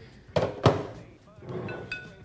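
Two sharp knocks of glass liquor bottles set down and shifted on a wooden bar top, one about a third of a second in and another just after. A short faint clink follows near the end.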